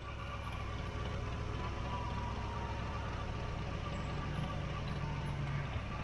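Ford LTD Crown Victoria's engine idling steadily with a low, even hum.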